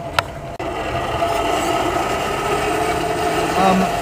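A hand-cranked centrifugal forge blower whirring steadily as its gearbox and fan are turned, forcing air through the coke fire to make it burn hotter. It starts about half a second in, just after a single click.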